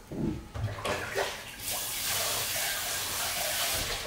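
A kitchen sink tap running steadily into the sink for about two seconds and shutting off near the end, after a few knocks of items being handled at the counter.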